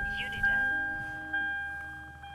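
A 2006 Lexus IS 350's dashboard warning chime dinging over and over at an even pace, about once a second and fading between dings, as the car is switched on. Soft background music plays under it.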